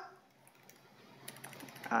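Faint computer-keyboard typing, a quick run of key clicks in the second half, as code is edited.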